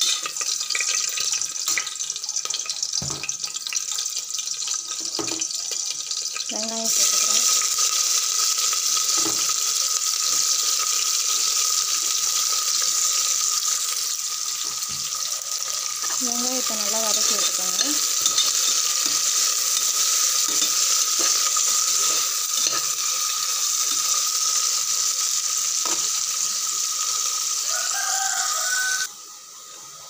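Whole spices frying in oil in an aluminium pressure cooker, with a few knocks of a spoon against the pot. About seven seconds in, sliced onions go into the hot oil and a much louder sizzle starts, running on steadily as they are stirred, until it drops away near the end.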